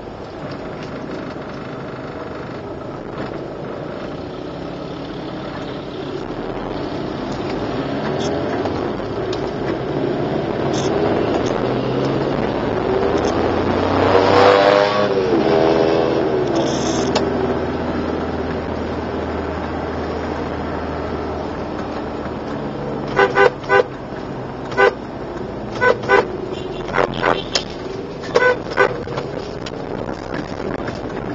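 Steady road and engine noise heard from inside a car moving through traffic. About halfway through, a passing pitched sound rises and then falls. In the last quarter, a car horn gives a string of about ten short toots.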